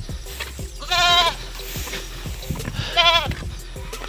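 A goat bleating twice, two short, high, quavering bleats about two seconds apart.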